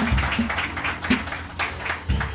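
Drum kit and electric bass playing softly in a small jazz combo: irregular sharp, light hits over short low notes.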